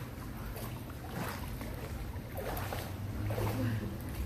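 Pool water lapping and sloshing at the edge close by, over a steady low hum, with faint voices in the background.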